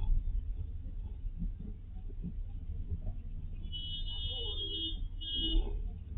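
Low, steady rumble of a car driving, heard from inside the cabin. About two-thirds of the way in, a high-pitched electronic beep sounds for about a second and a half, then again briefly.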